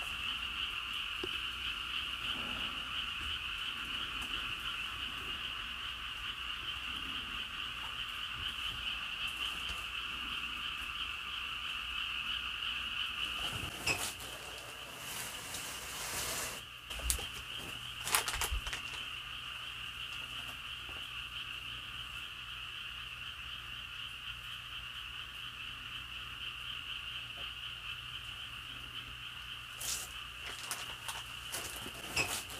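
A steady chorus of frogs calling throughout. A few brief knocks and clatters come about halfway through.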